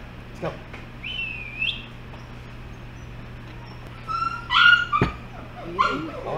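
Young husky-mix puppies whining and yipping: a high, sliding whine about a second in, then a louder yip a little after four seconds, followed by a sharp knock.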